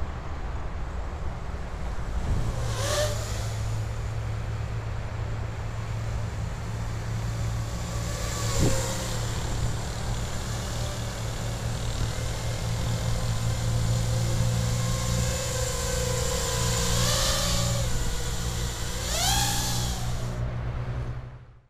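Eachine Wizard X220S racing quadcopter in flight, its brushless motors and propellers giving a buzzing whine over a steady low rumble. The whine rises sharply in pitch with throttle bursts about three seconds in, near nine seconds, and twice near the end.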